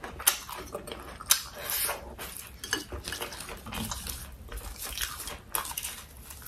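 Close-miked chewing and crunching of food, with many sharp, irregular clicks and snaps, while fresh basil leaves are stripped from their stems.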